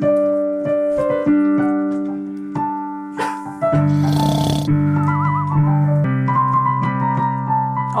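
A Kurzweil digital piano played slowly, with held chords and a simple melody. A lower bass part joins a little before halfway. A short rushing noise sounds just after the bass comes in.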